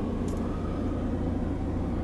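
Audi A5 2.0 TDI four-cylinder diesel engine idling, a steady low hum heard inside the cabin.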